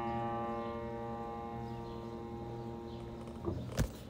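Final piano chord held and slowly dying away, cut off about three and a half seconds in as the keys are released, followed by a couple of sharp clicks near the end.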